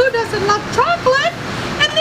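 A woman's voice, talking in a high, lively pitch that rises and falls.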